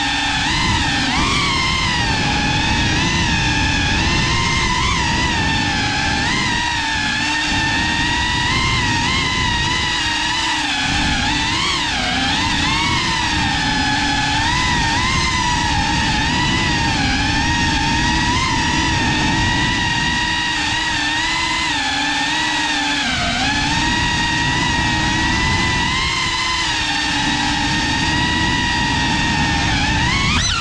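A GEPRC Cinelog 35 cinewhoop drone's brushless motors and ducted propellers whining steadily in flight, the pitch wobbling up and down as the throttle changes. Underneath is a low rushing noise that dips briefly a few times.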